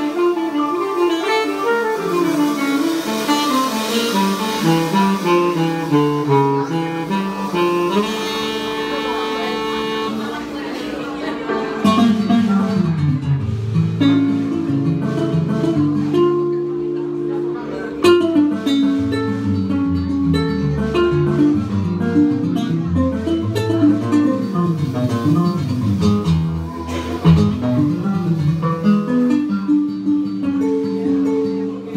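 Live band playing a Latin-rhythm arrangement: melodic guitar and keyboard lines at first, then bass and percussion come in about twelve seconds in and the sound fills out.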